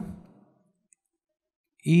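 Near silence between spoken phrases: a man's voice trails off at the start and comes back just before the end, with a single faint short click about a second in.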